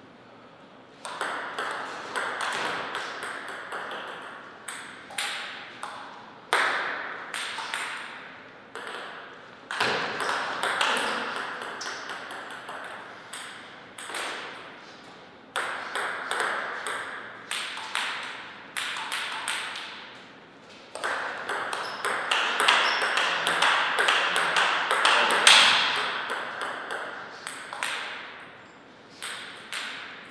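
Table tennis rallies: the ball clicks in quick alternation off the paddles and the table, each hit ringing briefly in the room. Several rallies are separated by short pauses, and the longest, loudest exchange comes a little past the middle.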